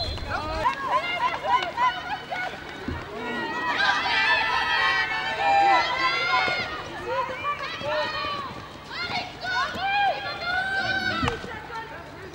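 High women's voices calling and shouting to one another, several overlapping, during a field hockey game.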